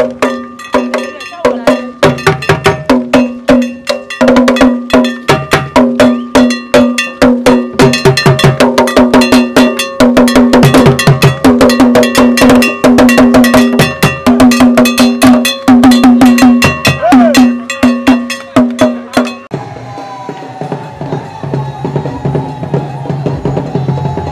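Traditional Akan barrel drums beaten with sticks in a fast, dense processional rhythm, with a ringing pitched strike repeating throughout. The drumming stops about nineteen seconds in, giving way to a quieter sound with a wavering tone.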